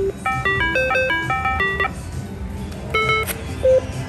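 Reel slot machine's electronic spin tune: a quick run of stepped beeping notes while the reels spin, then about three seconds in a short chime and a sharp click as the next spin starts.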